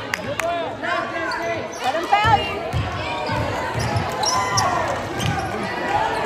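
Basketball game action on a hardwood gym floor: the ball and players' feet thudding on the court during a scramble for a loose ball, with players and spectators calling out.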